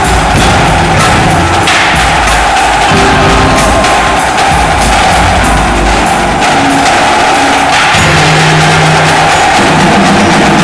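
Indoor percussion ensemble playing loudly: a marching drumline of snare, tenor and bass drums with rapid, dense strikes, over a front ensemble of mallet keyboards such as marimbas and vibraphones.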